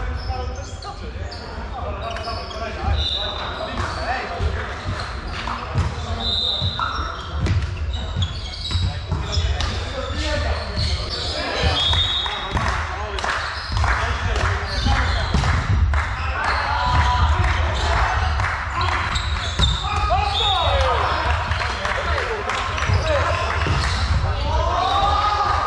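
Indoor volleyball play: the ball being struck and bouncing at irregular moments, with short high squeaks of sports shoes on the wooden court and players calling out, all echoing in a large sports hall.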